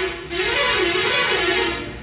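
A man's voice through a microphone and public-address loudspeaker, drawn out in one long held note that wavers in pitch, fading near the end.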